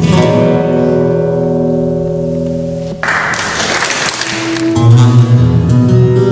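Acoustic guitar played solo: a chord is left ringing for about three seconds, then a rough, noisy burst of sound lasts about a second and a half, and picked notes with a strong bass line start again.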